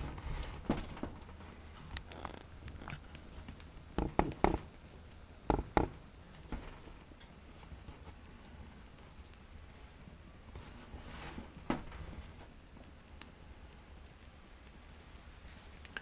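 Pine twigs burning in a small wire-mesh wood-gas (TLUD) stove, crackling with scattered sharp pops, a cluster of them about four to six seconds in and a few more near the end, over a faint low rumble.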